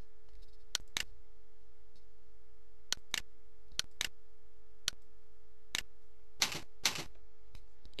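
Sharp clicks of a computer mouse and keyboard, several coming in quick pairs, over a steady electrical hum.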